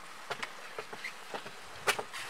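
Footsteps climbing wooden outdoor stairs: a run of short, irregular knocks and scuffs, with one louder knock near the end.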